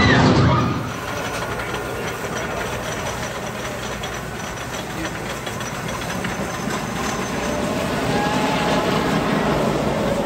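Wooden roller coaster train running along its track, a steady rumble and clatter that slowly grows louder toward the end.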